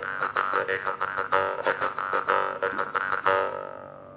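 Mouth harp (jaw harp) played in quick rhythmic plucks: a buzzing drone whose overtones shift with the mouth. It dies away a little after three seconds in.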